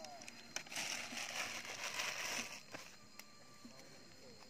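Plastic sachet crinkling and rustling as it is handled and emptied over a tub of fish bait, for about two seconds, with a few small clicks, then dying down.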